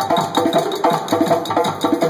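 Live African drumming: laced barrel drums, one with a bell fixed to it, struck in a fast, steady, interlocking rhythm, each low stroke falling in pitch as it rings.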